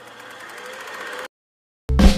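Intro sound effect: a fast rattling whir that grows louder for about a second and a half, then cuts off suddenly. After a short silence a marimba tune starts just before the end.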